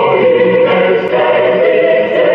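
A choir singing a Christmas hymn in long held notes, with a brief dip in loudness about a second in.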